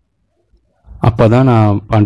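A man's voice: after a near-silent pause of about a second, he speaks in long, drawn-out, wavering vowels.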